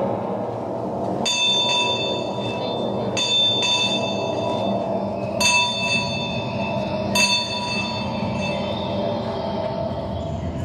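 A small bell struck four times, roughly every two seconds, each stroke ringing on with clear high overtones, over a steady low drone.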